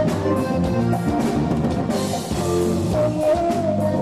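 Tejano band playing live, with drum kit, electric guitar and keyboard in a steady beat.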